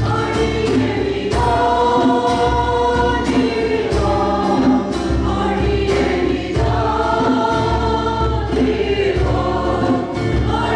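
Church choir singing a praise and worship song, led by women's voices, with long held notes.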